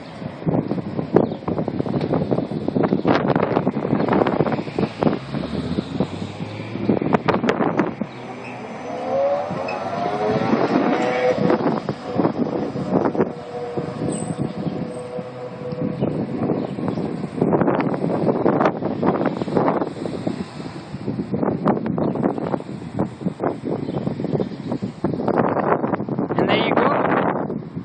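Street traffic with a city bus driving off, its motor whine rising in pitch and then holding steady, over gusts of wind buffeting the phone's microphone.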